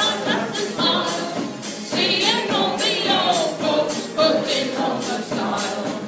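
Live sing-along song: singing with vibrato over guitar and a steady percussion beat of about two hits a second.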